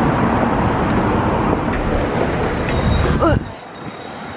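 Loud, steady outdoor street noise with a low traffic rumble. A brief voice sounds just after three seconds in, then the sound drops abruptly to a quieter indoor background.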